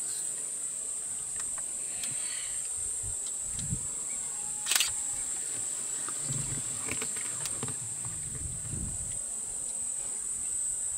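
A steady, high-pitched drone of insects in hot bush. A single sharp click comes a little before halfway, and a few soft low sounds come and go.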